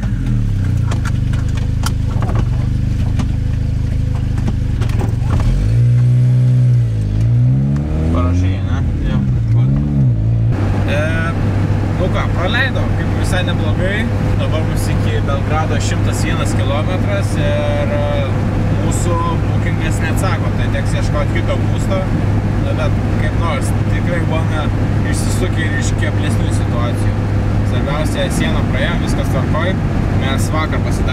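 Zastava Yugo's small four-cylinder engine heard from inside the cabin, revving so its pitch rises and falls a few times about six to ten seconds in. After a sudden cut, the car is cruising: a steady engine drone with road noise.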